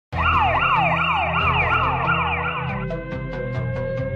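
A siren sounding in quick up-and-down sweeps, about three a second, over background music with a steady low bass. The siren cuts off a little under three seconds in, and the music goes on with a light ticking beat.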